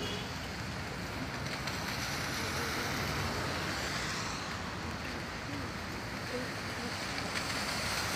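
Steady wash of rain and traffic on a wet street, heard from under an umbrella.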